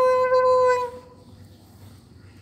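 A baby's held vocal 'aaah' on one steady pitch, ending about a second in.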